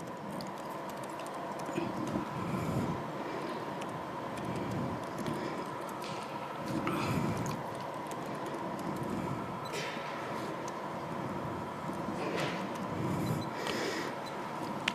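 Quiet room tone with a steady faint hum, broken by a few scattered soft clicks of laptop keystrokes and some low rustling.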